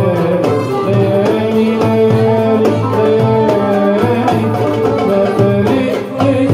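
Live Middle Eastern ensemble music for bellydance: violin, oud and keyboard playing a melody in long held and ornamented notes over a steady rhythm on tabla (Arabic goblet drum) and frame drum.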